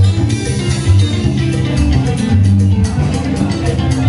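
Live Peruvian cumbia band playing: plucked guitar lines over a moving bass line and steady percussion.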